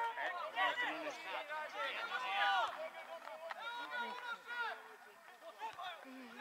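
Several voices calling and talking at once across an outdoor football pitch, fading off in the last second or so.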